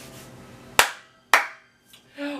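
Two sharp hand claps about half a second apart, each with a short ring-out.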